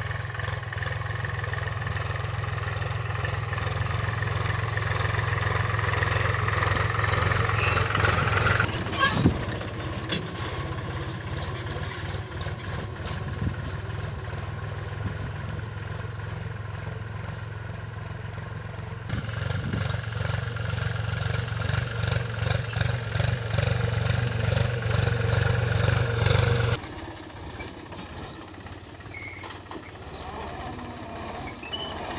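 Farm tractor's diesel engine running steadily under load while pulling a seed drill through ploughed soil. It grows louder as the tractor comes closer, eases off about nine seconds in, builds again from about nineteen seconds, then drops off abruptly near the end.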